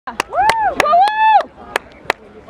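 Two long, high-pitched shouts from a spectator close to the microphone, each rising and then falling in pitch, cheering on the play. Several sharp clicks fall among and after the shouts.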